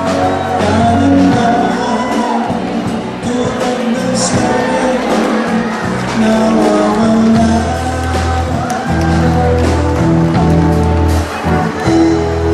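Live band music: a man singing into a microphone, backed by keyboard and drums.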